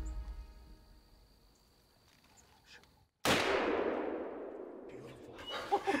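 Background music fading out into near silence, then a single gunshot about three seconds in whose report dies away over about two seconds. A short laugh near the end.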